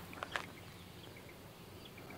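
Faint outdoor background of insects with a few short, high bird chirps. Two light clicks about a quarter second in, from the thrower's feet on the concrete tee pad.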